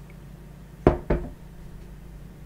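A mug being set down on a hard surface: two knocks close together about a second in, each with a short ring.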